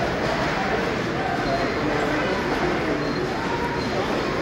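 Steady hubbub of many indistinct voices in a large, crowded hall.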